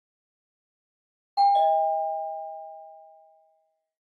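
Two-tone 'ding-dong' doorbell chime: a higher note, then a lower one just after, both ringing out and fading away over about two seconds.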